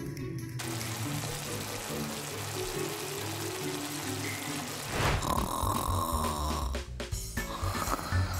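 A steady sizzling hiss, like food frying, over background music. About five seconds in it gives way to a snoring sound effect with pulsing low breaths.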